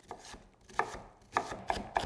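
A santoku knife dicing an onion on a wooden cutting board: a series of sharp knife strikes against the board. They are sparse at first and come quicker through the second half.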